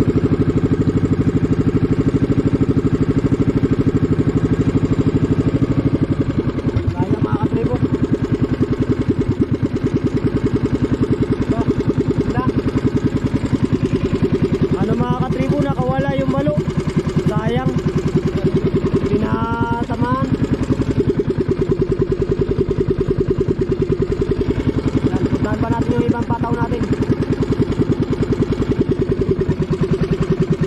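Motorized outrigger boat's (bangka) engine running steadily with a fast, even beat while the boat moves along its fishing lines; the engine note shifts slightly about six seconds in.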